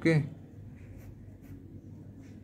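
Ballpoint pen writing on paper: faint, short scratching strokes about a second in and again half a second later.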